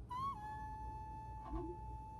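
A high, steady held tone with a short upward flick at its start, keeping one pitch for several seconds: an edited-in sound effect in a Korean variety-show clip.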